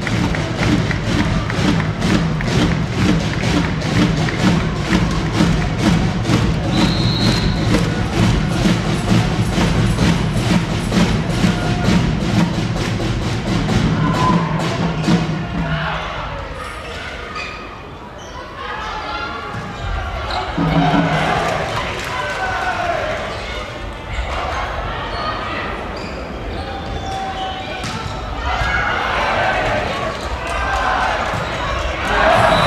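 Music with a steady fast beat played over a sports hall's loudspeakers, stopping about sixteen seconds in. After it come hall noise and crowd voices, with occasional thuds.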